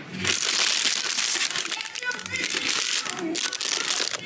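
Plastic snack packaging crinkling as a hand rummages through a basket of bagged crisps and sweets, densest in the first two seconds and then lighter and patchier.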